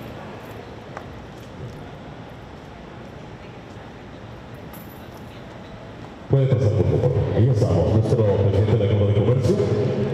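Quiet hall room tone, then about six seconds in a man's voice starts abruptly, loud, through the PA system.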